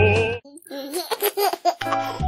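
A sung music track cuts off shortly in, followed by about a second of a baby's laughter. A new music track with keyboard notes starts near the end.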